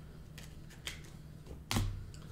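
Faint clicks of trading cards being handled, then a short knock near the end as a card box is set down on the table.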